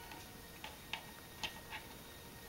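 Faint, irregular small clicks of a plastic action figure and its parts being handled and set in a pose.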